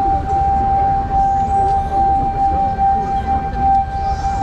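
A single steady high tone is held over the show's loudspeakers while the waiting audience murmurs.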